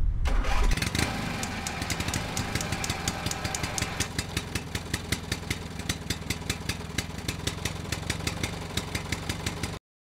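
Tadano crane's diesel engine starting up and then idling, with a steady rhythmic clatter; the sound cuts off suddenly near the end.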